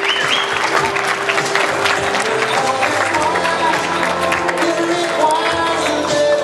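Music playing through the hall's sound system while a large crowd of guests applauds, with many overlapping claps.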